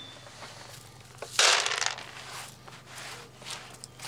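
Dried peas and dry pea chaff rustling in a round wooden hand sieve as they are sieved, with one louder half-second rush about a second and a half in and a few softer rustles after it.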